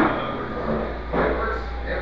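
Indistinct voices over a steady low hum, with a short thump at the very start.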